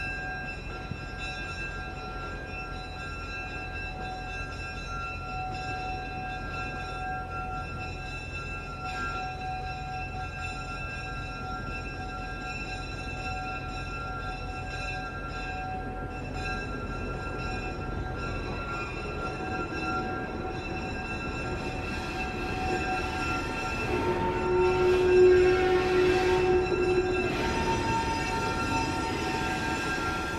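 Diesel switcher locomotive running at low speed, its engine a steady rumble with a thin steady whine, growing louder as it draws close. Near the end a louder held tone rises over it for a few seconds.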